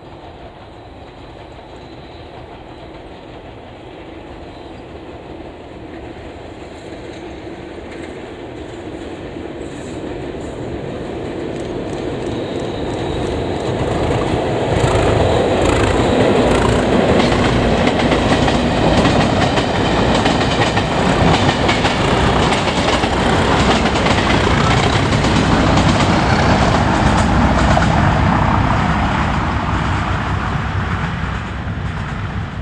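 Test train hauled by two Class 37 diesel locomotives with English Electric V12 engines, crossing a steel lattice viaduct. The sound grows steadily for about fifteen seconds as the train approaches, then stays loud with the wheels clicking over rail joints, easing slightly near the end.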